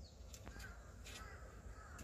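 A street cat gives a faint, drawn-out meow that starts about half a second in and wavers for about a second and a half.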